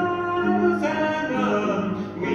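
Male vocal trio singing a gospel song in long held notes over an instrumental accompaniment.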